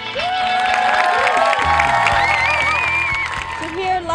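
A crowd of people cheering and calling out over music that continues underneath, with a deep low note coming in about halfway through.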